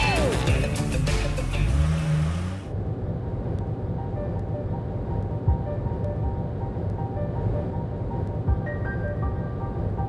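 Background music, full and loud for the first couple of seconds, then cut abruptly to a quieter, muffled music bed about two and a half seconds in. Under it runs a steady low rumble of motorway traffic.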